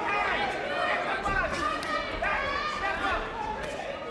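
Boxing arena crowd: many overlapping voices shouting and calling out, with a few short sharp knocks.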